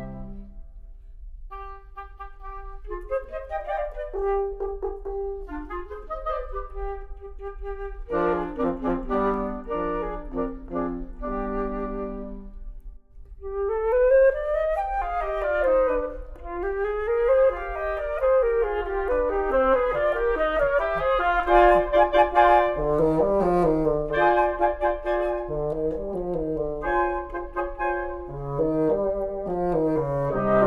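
Wind quintet of flute, oboe, clarinet, bassoon and French horn playing a minuet in a classical arrangement. The texture is thin at first and fills out about eight seconds in. After a brief pause near the middle, the full ensemble plays with rising and falling runs over low bass notes.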